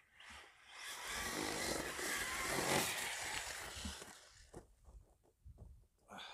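Arrma Senton 3S BLX brushless RC truck driving at speed, its motor and tyres swelling in level for about three seconds and then fading away.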